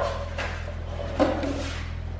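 A Toyota MR2's plastic dashboard being lifted out of the car, knocking and rubbing against the body, with a sharp knock about half a second in, over a steady low hum.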